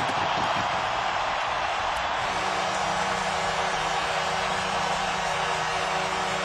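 Hockey arena crowd cheering steadily as the home team's playoff win ends. About two seconds in, a steady low drone of several held notes joins the cheering.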